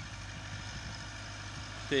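Massey Ferguson 385 tractor's four-cylinder diesel engine running steadily under load as it pulls a tine cultivator through tilled soil.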